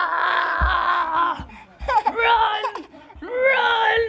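A toddler's voice: one long held squeal that trails off a little over a second in, then two shorter whiny cries that rise and fall in pitch. A dull bump sounds about half a second in.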